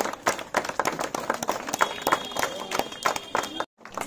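A small group of people clapping their hands, irregular overlapping claps, with voices underneath. The sound breaks off for a moment near the end.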